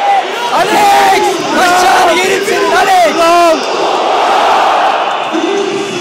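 Men close by shouting "Alex!" in long, drawn-out yells, over the steady noise of a packed stadium crowd. The yells come one after another for the first few seconds, the crowd noise carries on alone, and one more yell starts near the end.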